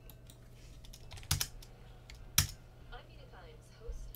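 Sparse clicks from a computer keyboard and mouse, with two louder clicks about a second apart near the middle, over a steady low hum.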